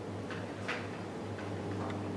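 Room tone in a pause in the talk: a low steady hum with two faint short clicks about a third and two-thirds of a second in.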